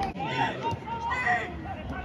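Voices of footballers and onlookers shouting and calling out, over background chatter.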